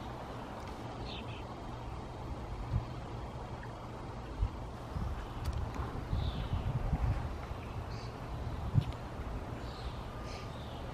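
Outdoor ambience dominated by a fluttering low rumble of wind buffeting the camera's microphone, with a few soft thumps. A few faint high chirps come through about a second in and again near the middle and later on.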